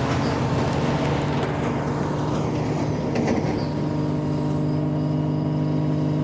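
Small blimp's engines and ducted propellers running with a steady, even drone during the takeoff sequence.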